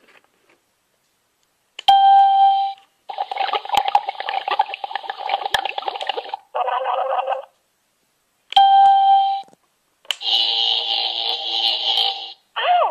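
Electronic sound effects from a toy train fuelling-station playset, set off by its buttons. The same short chime, the Windows 95 "Ding", sounds twice, about two seconds and nine seconds in. Between the chimes comes a few seconds of hissing effect with a tone in it and a short electronic jingle, and a buzzy chord sounds near the end.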